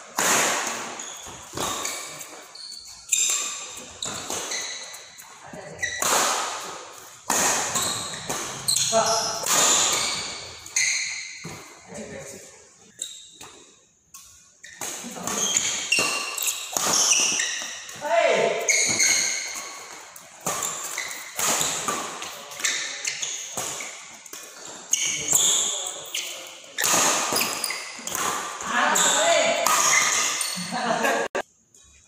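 Doubles badminton rally in a large hall: racket strikes on the shuttlecock, sharp and ringing in the room about once a second, mixed with short high squeaks of court shoes on the floor and the players' occasional voices.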